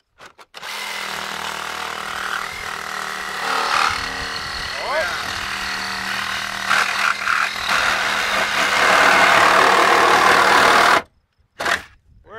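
Cordless DeWalt FlexVolt reciprocating saw with a wood-and-metal blade cutting through a Chevy Equinox's thick steel roof pillar. It runs steadily for about ten seconds, louder in the last few seconds, then stops abruptly.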